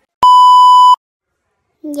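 TV color-bars test-tone beep: one loud, steady, high-pitched beep lasting about three-quarters of a second that starts and cuts off abruptly.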